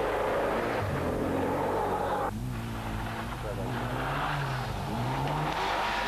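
Mitsubishi Group N rally car's engine running hard as it passes close, cut off suddenly about two seconds in; then the engine revving up and easing off again as the car comes on.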